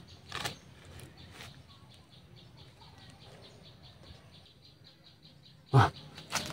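Faint, rapid, evenly repeated high chirping, about five a second, with a brief sharp handling noise about half a second in as a small red fruit is squeezed and pried open by hand.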